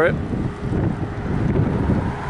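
Wind buffeting the camera microphone: loud, rough rumbling wind noise that rises and falls with the gusts.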